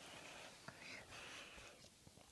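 Faint whispering close to the microphone, in two short breathy stretches with a pause between them.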